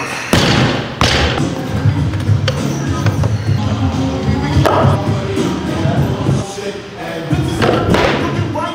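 Loaded barbell with bumper plates dropped from overhead onto a lifting platform: a heavy thud about a third of a second in and a second thud from its bounce about a second in. A smaller knock follows about halfway through while plates are handled on the bar, all over gym music with vocals.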